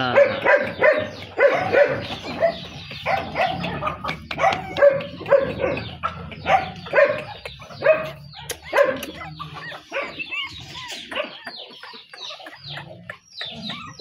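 Small puppies yipping and whining in short, high-pitched calls, one after another, several to the second at times.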